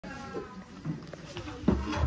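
High-pitched young children's voices, followed near the end by one loud, deep thump.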